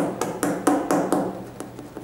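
Fingers tapping and patting the rubber outsole of an Air Jordan 13 sneaker held in the hand: a quick series of sharp taps, about four a second, louder in the first second.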